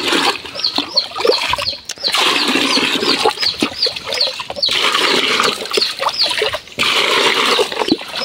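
Water poured from a plastic dipper splashing into a plastic bucket, with a steady run of water. Short, high, falling chirps from birds repeat throughout, a few each second.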